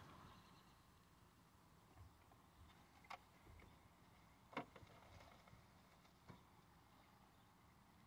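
Near silence with faint mouth clicks from chewing a mouthful of sub sandwich, two of them about three and four and a half seconds in.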